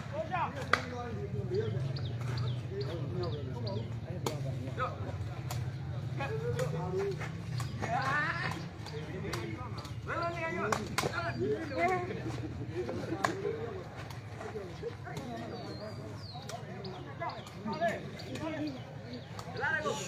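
Voices of players and onlookers calling out around an outdoor sepak takraw court, with short sharp knocks of the takraw ball being kicked scattered through the rally.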